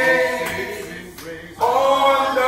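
Unaccompanied hymn singing in a church. A long held note fades away, and a new phrase starts strongly near the end.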